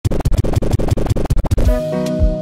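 DJ scratching: a rapid, choppy run of cut-up stutters for about a second and a half, then the song comes in with a held chord over a bass note.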